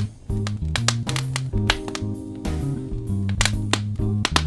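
Smooth jazz with bass guitar, chords and drums, over the irregular crackle and pops of a wood fire burning in a fireplace.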